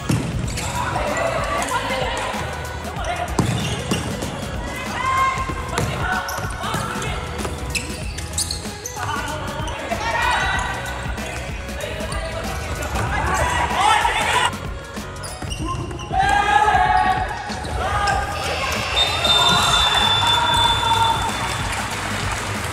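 Indoor futsal match play in a reverberant sports hall: players shouting and calling to each other, with ball bounces and kicks on the court, over background music. A long, steady, high whistle tone sounds near the end.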